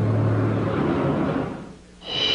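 A steady rushing rumble with low held notes underneath for the first second. It all fades out about a second and a half in.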